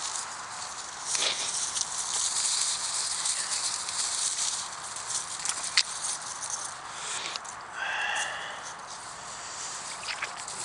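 A rubber boot wading into flooded, muddy ground, with rustling and sloshing steps and a short high squeak about eight seconds in. The boot sinks quickly into the soft mud.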